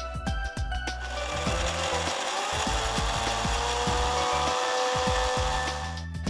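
750-watt Philips mixer grinder running for about five seconds, starting about a second in and stopping near the end, its motor whine settling to a steady pitch as it grinds a paste with milk in the small steel jar. Background music plays underneath.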